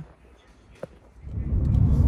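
Car cabin noise: engine and road rumble heard from inside a moving car, fading up strongly about a second in after a quiet stretch with one short click.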